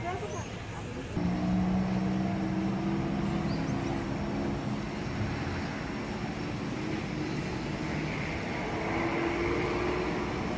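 A vehicle engine running steadily, starting about a second in, its pitch rising slightly near the end.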